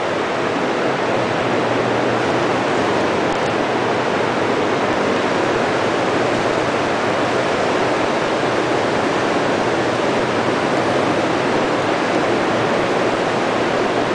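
Orics R20 rotary tray sealer running: a loud, steady, even rushing noise with no distinct beat or tone.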